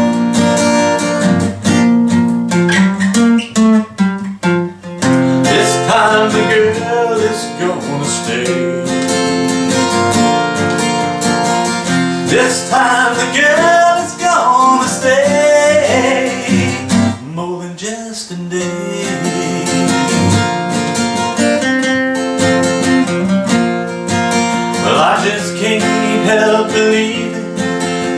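Steel-string acoustic guitar strummed in a steady ballad rhythm, with a man singing over it in several phrases.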